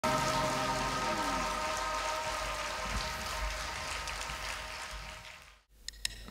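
A held chord from the live band ringing out and slowly dying away under an even hiss-like noise, all of it fading to silence about five and a half seconds in.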